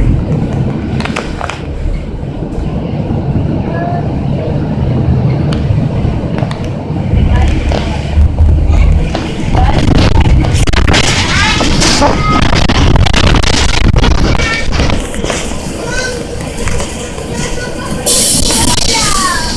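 Interior of a city transit bus under way: steady low engine and road rumble that grows louder about halfway through, with passengers' voices chattering over it.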